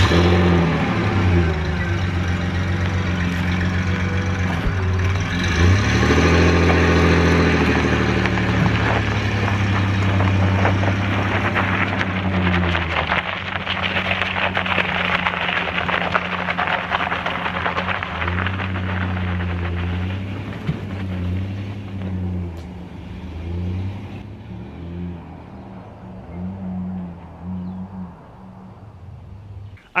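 Pickup truck engine pulling slowly in low gear while dragging a heavy log over gravel, its low note rising and falling as it creeps off. Crunching and scraping from the gravel under the log and tyres runs with it, and both fade as the truck moves away.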